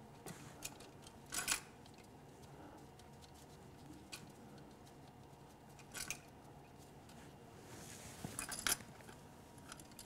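Light metallic clicks and clinks of steel fuel injector hard lines and their nuts being handled and threaded on by hand. There are single clicks about a second and a half in and around six seconds, and a short cluster of clicks near the end.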